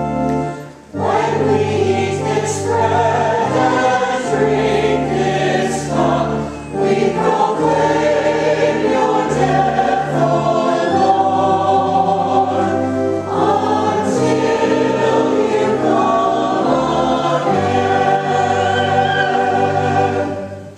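Church choir singing a liturgical acclamation, with held low organ notes underneath. The singing comes in about a second in, after a brief dip, and carries on to the end.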